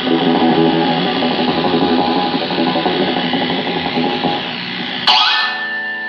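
Electric guitar played through a small amplifier, a busy run of notes with effects. About five seconds in the playing stops with a sharp knock, and a steady high tone holds after it.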